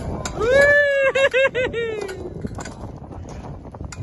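A child's high voice giving one long whoop while bouncing on a bungee trampoline, wavering several times in quick succession in the middle and fading out about two seconds in. Short knocks and rustle run underneath.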